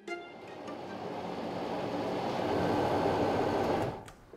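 The last notes of background music fade into a rushing swell of noise that builds steadily and cuts off suddenly near the end, like an editing riser or whoosh.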